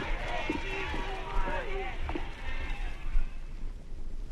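Several voices calling out over a noisy background of commotion, without music, with a sharp knock a little past two seconds in.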